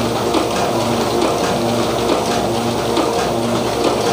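Two-colour offset printing press for non-woven bags running steadily, its rollers and mechanism giving a continuous rapid mechanical clatter.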